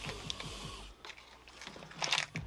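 Faint handling noise of a plastic parts case being lifted out of a box and turned over in the hands: light rubbing with a few soft clicks.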